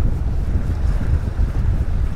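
Wind buffeting an action camera's microphone: a loud, uneven low rumble that gusts throughout.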